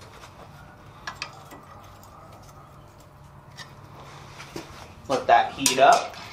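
Quiet workshop room tone: a faint steady low hum with a few faint ticks, then a man starts talking about a second before the end.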